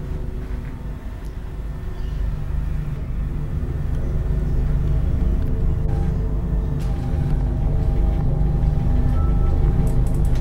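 Dark, ominous background score: a low rumbling drone with several held tones over it, slowly growing louder.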